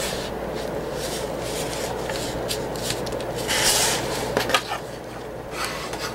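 Handmade paper bag of 12 by 12 paper being pushed in and folded down by hand: paper rustling and rubbing, with a louder, brighter scrape about three and a half seconds in.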